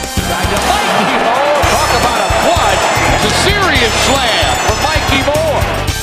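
Live basketball game sound, with arena crowd noise and court sounds full of short squeaky glides, mixed under background music with a steady beat.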